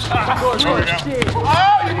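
A basketball bouncing on a hard outdoor court during a pickup game, a series of short sharp knocks, with players' voices calling out over it.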